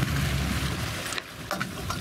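A fishing boat's motor running steadily, under wind and water noise on open sea.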